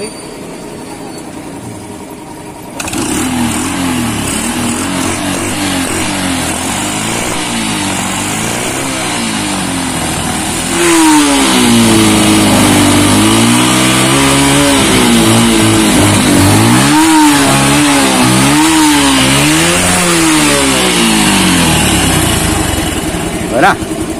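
Honda motorcycle's small single-cylinder engine running and being revved up and down over and over, its pitch rising and falling about once a second. It comes in suddenly about three seconds in and gets louder about eleven seconds in.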